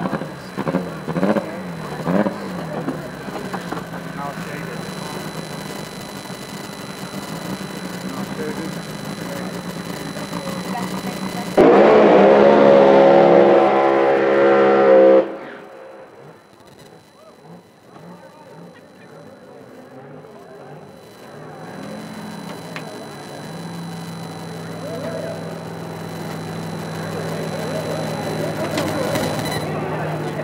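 A race car engine at high revs, very loud for about three and a half seconds from about twelve seconds in, then cutting off abruptly. Before and after it, a steady low engine drone runs under background voices.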